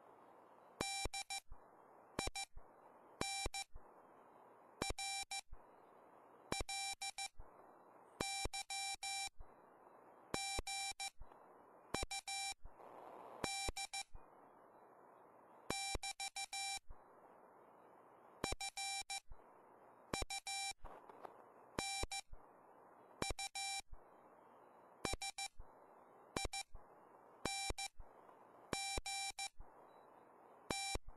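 RockMite 40 QRP transceiver's sidetone sounding Morse code (CW) as it is keyed: a single mid-pitched, buzzy beep switching on and off in dots and dashes, grouped into characters and words. Between the groups, the receiver's steady band hiss comes back.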